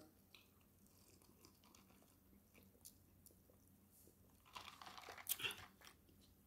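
Close-up eating sounds: a few faint mouth clicks, then about a second of louder chewing near the end.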